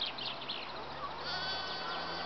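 Sheep bleating, with one long drawn-out bleat through the second half.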